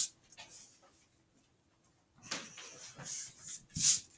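Pencil scratching on paper in short drawing strokes, starting about halfway in, with a louder stroke near the end.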